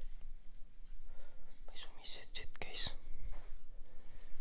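A person whispering a few short, breathy phrases in the middle, low and unvoiced.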